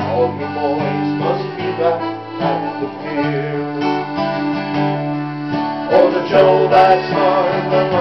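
Acoustic string band playing an instrumental break in a Newfoundland folk song: strummed and plucked guitar and bouzouki under a sustained melody line.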